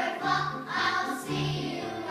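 A group of young performers singing a song together on stage, with musical accompaniment underneath, in a series of held notes.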